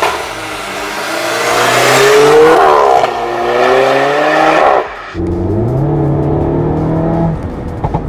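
Alfa Romeo Giulietta Veloce S's 1750 TBi turbocharged four-cylinder engine accelerating hard past and away, loudest as it goes by. Its pitch rises, drops at a quick upshift about three seconds in, and rises again. About five seconds in the sound changes abruptly to the engine heard from inside the cabin, rising briefly and then holding steady.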